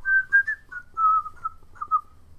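A man whistling a short run of about eight quick notes that step down in pitch: an innocent, looking-away whistle acting out the crowd's dodge of responsibility.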